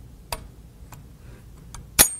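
Small, sharp metallic clicks from the action of an antique rotating-magazine shotgun as it is handled during loading, then a much louder, sharp click at the very end as the hammer is drawn fully back.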